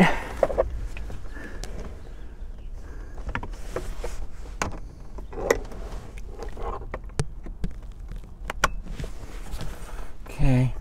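Scattered small clicks and scrapes of a screwdriver probing inside the plastic back of a steering wheel, pressing the wire spring clip that holds the driver's airbag.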